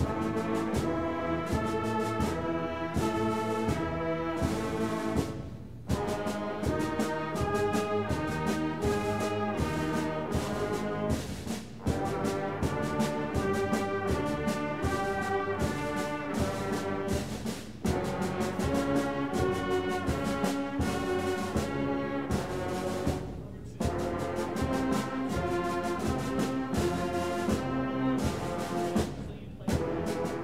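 School concert band of brass and woodwinds playing sustained chords in slow phrases of about six seconds, each phrase ending in a brief break before the next.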